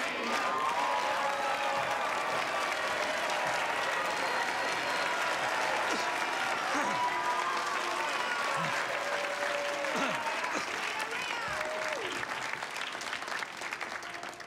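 A cabaret audience applauding steadily, with cheering and whooping voices rising over the clapping.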